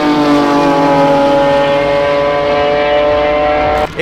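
Performance car engines at speed on a race circuit: one high engine note dominates, falling slowly and evenly in pitch, and cuts off abruptly near the end.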